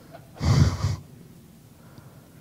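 A man's short, breathy laugh into the microphone about half a second in, then quiet room tone.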